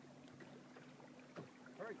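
Near silence with a faint steady hum, one short knock about one and a half seconds in, and a voice starting right at the end.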